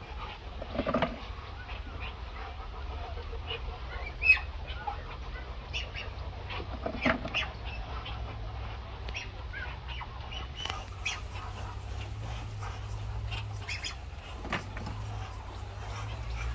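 Muscovy ducks giving a few short calls, the loudest about a second in and again about seven seconds in. Scattered light clicks and knocks come from duck eggs being handled and dropped into a plastic bucket, the sharpest about four seconds in, over a steady low hum.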